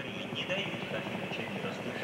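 Steady, fairly quiet background noise from a live TV broadcast's outdoor sound feed, with no clear single source.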